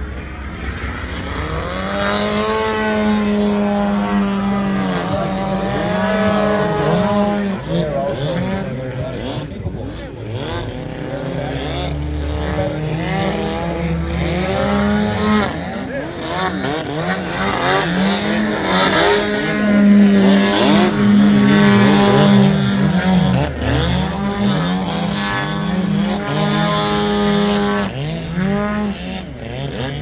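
Engine of a giant-scale radio-controlled biplane in flight, its pitch repeatedly rising and falling with throttle changes and passes through manoeuvres. It is loudest about two-thirds of the way through.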